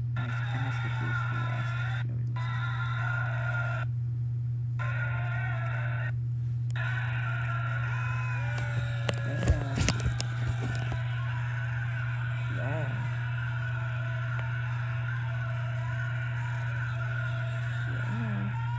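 A phone-recorded fan video of a live children's stage show playing through laptop speakers: muffled voices and audience noise over a steady low hum. A few sharp knocks sound about nine to ten seconds in.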